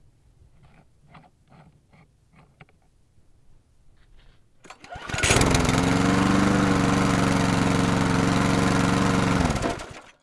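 Faint clicks and scrapes as a brass hose fitting is handled, then about five seconds in a small engine starts suddenly and runs loud and steady before fading out near the end.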